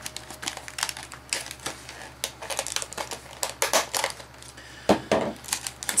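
Hard plastic clicking and crackling as the pod is worked loose from the roof of a Treasure X Aliens toy capsule, with a louder knock about five seconds in.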